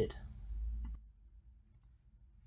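A low rumble in the first second, then a couple of faint computer mouse clicks, one about a second in and one near the end.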